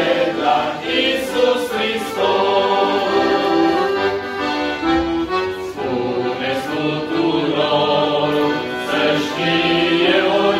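Male vocal group singing a Christian song in harmony, accompanied by an accordion, with long held notes.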